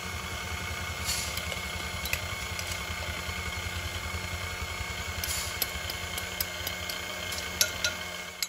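Sunbeam electric stand mixer running steadily, its beaters churning thick cookie dough in a stainless steel bowl, with scattered light clicks.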